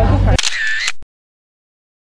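Crowd chatter cuts off into a camera shutter sound effect about half a second long, with a short arching tone in it, followed by dead silence.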